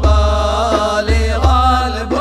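Devotional Sufi chant sung in Arabic, a voice holding long ornamented notes that glide between pitches, over a deep bass accompaniment that comes and goes about once a second.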